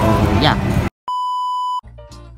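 A steady, high electronic beep tone, about three-quarters of a second long, set in after a moment of dead silence. It follows a spoken word over outdoor crowd noise, and music starts right as the beep ends.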